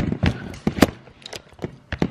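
Handling noise: a run of short knocks and clicks, about seven in two seconds, the loudest a little before the middle, as a phone camera on its tripod is turned and moved and a ceramic cup is handled at the kitchen counter.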